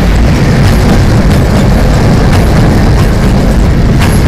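Cement hopper wagons of a freight train rolling past close by: a loud, steady rumble with occasional short clicks from the wheels.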